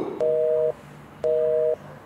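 Telephone busy tone after the call is cut off: two beeps, each about half a second long with a half-second gap between them, each beep two steady tones sounding together.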